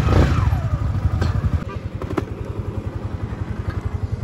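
Motorcycle engine pulling away at low speed, with an even low pulsing beat. It is loudest in the first second and a half, then settles quieter, and there are a couple of sharp clicks.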